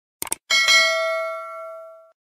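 Sound effect of a mouse double click, then about half a second in a notification bell ding. The ding rings with a clear tone and fades away over about a second and a half, as the cursor clicks the bell icon.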